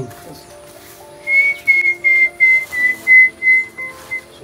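A series of about eight short, high whistled notes at nearly one pitch, about three a second, dipping slightly, starting a little over a second in. Faint background music runs underneath.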